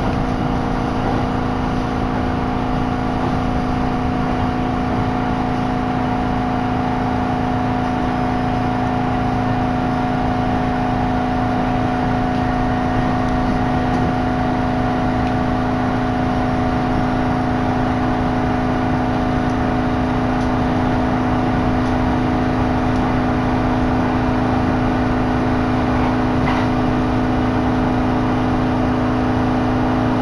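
Inside a moving electric train's passenger car: a steady running rumble with a constant-pitched motor hum, the train cruising at an even speed.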